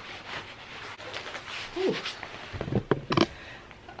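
Jacket and coat fabric rustling while being handled, then a zipper pulled up in a short series of quick clicks in the second half.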